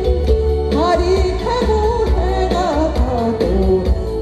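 An elderly woman singing into a handheld microphone with vibrato over musical accompaniment with a steady bass beat; her voice swoops up in pitch about a second in.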